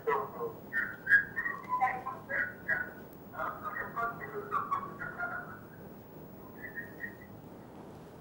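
A caller's voice coming in over a telephone line, thin and broken up with a whistly edge, fading out after about five seconds. The host's next words ask the caller to listen through the phone and turn the sound off, which points to the caller's television sound feeding back into the call.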